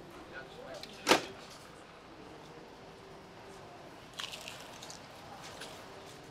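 The small glass door of a FEBO automat vending compartment snapping shut with one sharp click about a second in. Faint small clicks of handling follow about four seconds in, over a faint steady hum.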